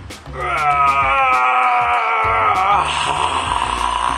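A man's long strained groan of effort while squeezing hard. It slides slowly down in pitch and turns rougher near the end, over background music with a steady beat.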